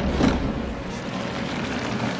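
Cartoon sound effect of a deep, steady rumble of grinding rock as a passage opens in a cave ceiling.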